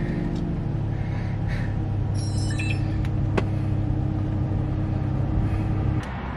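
Car engine running at a steady drone, heard from inside the cabin while driving. A brief cluster of high tones sounds about two seconds in, and a single sharp click comes a little past three seconds.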